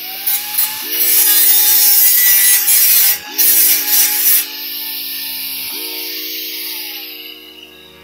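A hand-held power tool on the steel stair railing, its motor whining steadily as it grinds loudly for the first few seconds with brief breaks, then runs lighter and winds down near the end.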